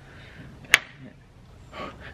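An egg being smashed against a forehead: a single sharp crack of the shell about three-quarters of a second in.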